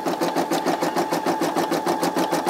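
Brother SE600 embroidery machine stitching out a design, its needle going in a fast, even rhythm of stitches over a steady motor hum.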